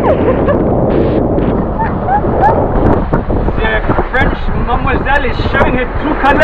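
Strong wind buffeting the microphone aboard a sailing yacht heeled over under full sail: a loud, steady rush. Indistinct voices join in over it during the second half.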